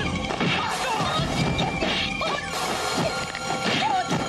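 Martial-arts film fight sound effects: several crashing, smacking hits over dramatic background music.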